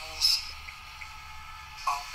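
Movie trailer audio playing through a phone's small speaker: a faint voice, with a brief loud hiss near the start.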